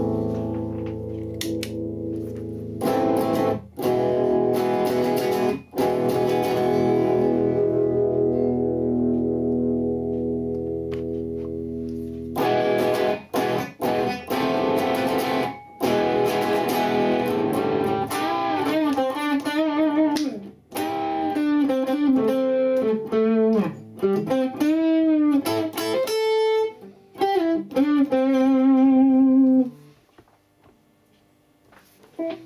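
Seven-string electric guitar played through a Mesa Boogie Dual Rectifier amp. It starts on the clean channel with the pedal off, playing sustained ringing chords. Partway through, the MXR Distortion III (M115) pedal is switched on and the guitar turns distorted, playing a lead line with string bends and vibrato that ends on a held, wavering note.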